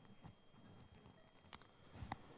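Near silence: faint room tone, with one short faint click about one and a half seconds in.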